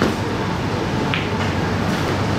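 Steady low rumble of room noise with a faint hum, and one faint short click about a second in.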